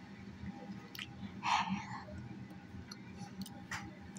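A mouthful of cotton candy being eaten: soft wet chewing and mouth sounds, with a brief louder sound about a second and a half in.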